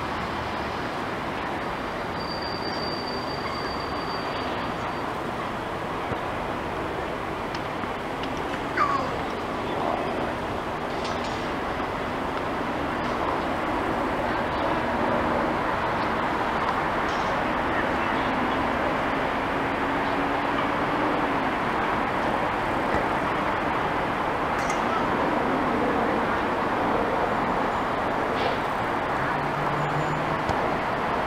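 Steady city traffic noise, growing slightly louder, with a low engine hum passing through the middle and a brief sharp sound about nine seconds in.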